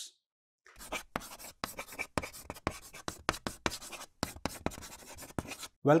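Writing on paper: a quick run of short, irregular scratching strokes, like a pencil drawing or writing. It starts about a second in and stops just before the voice returns.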